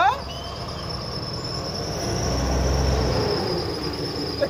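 Road traffic: a passing vehicle's rumble swells to a peak about two to three seconds in and fades. A steady high-pitched whine runs throughout.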